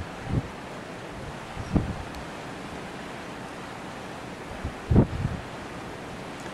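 Wind blowing over the microphone: a steady rush with a few short low buffeting thumps, about two seconds in and again near five seconds.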